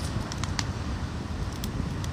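Outdoor background noise: wind rumbling steadily on the microphone, with a few faint sharp clicks scattered through it.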